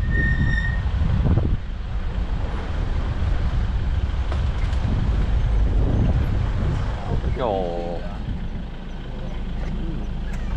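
Open safari vehicle's engine running and the vehicle rumbling as it drives slowly along a bumpy dirt track. A short high whistle sounds just after the start, and a brief rising voice-like sound a little past halfway.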